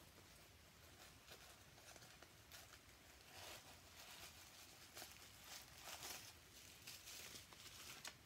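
Faint rustling and crinkling of a small wristlet being handled and taken out, with a few soft scrapes, the clearest about halfway in and again near six seconds.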